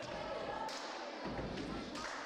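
Indistinct chatter of several voices in a room, quieter than close speech, with a dull low thump a little past halfway.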